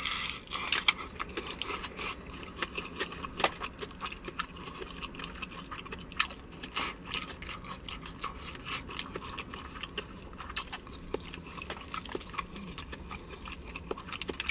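Close-up eating of KFC Extra Crispy fried chicken: chewing with many small sharp crunches of the crispy breading, the loudest about a second in.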